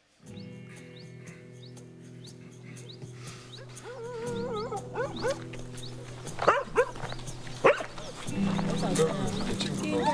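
Opening of a film trailer's soundtrack: a sustained low music chord that changes twice, with a laugh about five and a half seconds in and other voice or animal sounds over it. The loudest are two short sharp sounds about six and a half and seven and a half seconds in.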